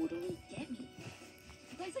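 Film soundtrack heard from a screen's speakers: background music with voices.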